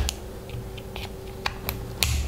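A run of small, irregular plastic clicks and snaps as a DPDT switch's plastic housing is pried and broken apart by hand.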